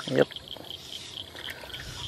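A small bream hooked on a fly line, splashing faintly at the pond surface, under a steady fast-pulsing chirr of insects.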